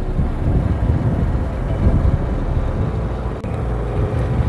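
A two-wheeler's engine running at a steady road speed, a continuous low rumble mixed with wind rush on the microphone.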